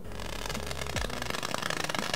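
Dense, rapid crackling as a torch lighter's flame heats a fire-extinguishing sheet and the tiny capsules packed inside it burst, over the low sound of the flame.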